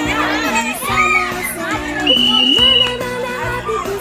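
A crowd of children shouting and chattering, over background music. A high steady tone sounds for under a second about two seconds in.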